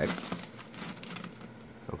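A thin clear plastic bag crinkling and rustling as it is handled, with a short knock near the end as it is dropped back into a plastic drawer.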